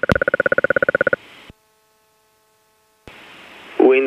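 Pulsing electronic buzz on the aircraft's radio/headset audio, about twenty pulses a second for about a second, that cuts off into dead silence. Near the end a faint hum comes back and a controller's voice begins on the radio.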